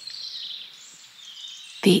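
Soft forest ambience: a gentle high hiss with faint, high chirps.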